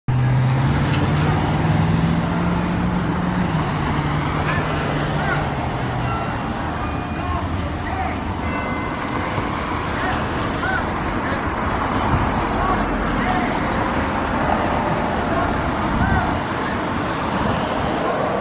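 Road traffic noise on a city street, with a bus engine running low and steady for about the first six seconds, then fading out.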